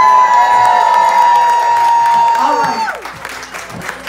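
A voice holding one long high note: it rises into the pitch, holds it steadily for nearly three seconds, then drops off sharply. Faint clapping runs underneath.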